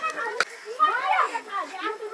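Children's voices talking and chattering, with one sharp knock about half a second in.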